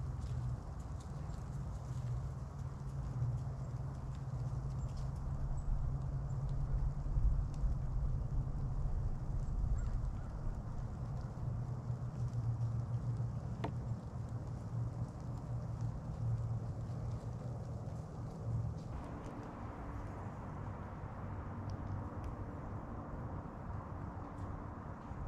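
A low, uneven rumble of wind buffeting the camera's microphone. About 19 seconds in, a faint steady hum and a higher hiss join it.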